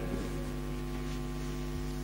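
Steady electrical mains hum in the microphone and amplifier chain: a low, even hum with a row of evenly spaced overtones that holds level.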